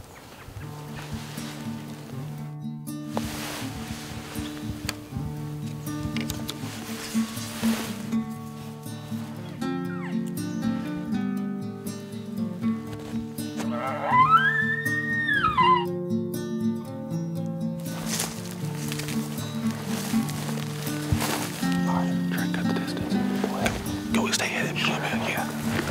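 Background music with sustained low notes throughout. About 14 seconds in, a bull elk bugles once: a high whistle that rises, holds and falls away over about two seconds.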